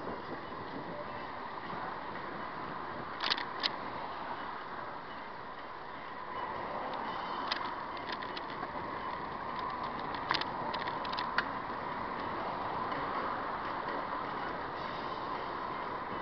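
Steady street traffic noise heard from a moving camera, with a few sharp clicks or rattles scattered through.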